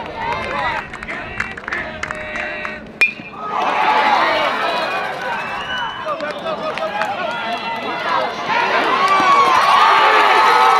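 A metal baseball bat cracks against the ball about three seconds in, with a short ring. A crowd of spectators and players then breaks into shouting and yelling that swells louder near the end as the play reaches home plate.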